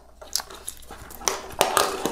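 Light clicks and rustling of a 3D-printer extruder assembly's aluminium plate, plastic parts and wires being handled as a fan cable is threaded through it, with the clicks coming more often toward the end.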